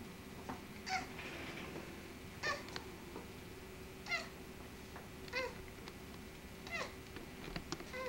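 Newborn baby crying in short, thin cries, five of them about a second and a half apart, each rising then falling in pitch. A faint steady hum runs underneath.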